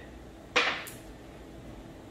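A single sharp knock that dies away within half a second as a glass marble is shot across the table, followed by a faint high tick.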